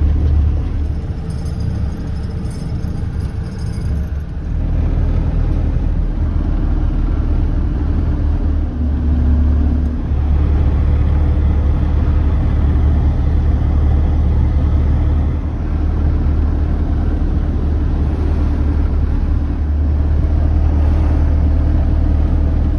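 Mercedes Vario expedition truck on the move: a steady diesel engine drone with tyre noise on a wet road. The sound grows a little louder about four seconds in.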